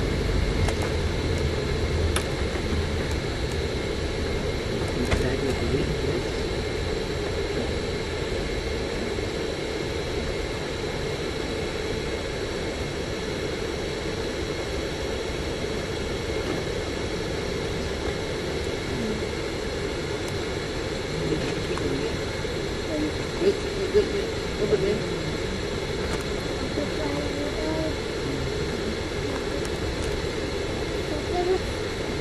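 Steady engine and road noise of a moving bus, heard from inside its cabin, with a deeper rumble in the first few seconds that then eases off.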